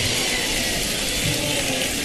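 Concert audience applauding: a dense, even clatter of many hands clapping, held at a steady level.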